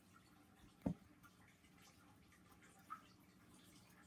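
Near silence: faint room tone, with one soft knock about a second in and a fainter click near the end.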